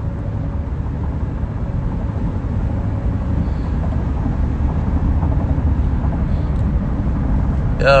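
Steady low rumble of engine and road noise heard inside a car's cabin, with no voice over it.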